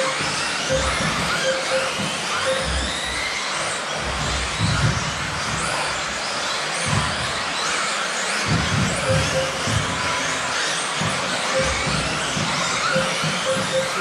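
Several electric 1/10-scale 2WD off-road buggies racing on a carpet track: overlapping motor whines rise and fall as the cars accelerate and brake. There are irregular low thumps, and short high beeps come in clusters near the start and again near the end.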